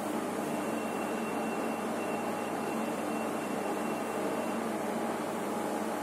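Express lift car travelling upward between floors: steady rushing ride noise inside the cabin. A faint, thin high whine runs for about four seconds in the middle.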